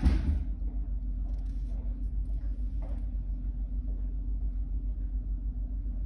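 Steady low background rumble, with a short burst of noise right at the start.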